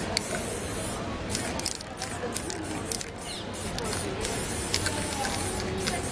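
Aerosol spray paint can spraying in a series of short hissing bursts with brief pauses between them.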